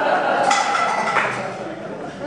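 Metal clinks and a sharp knock about half a second in as a harmonica and its neck holder are handled and fitted, with voices murmuring underneath.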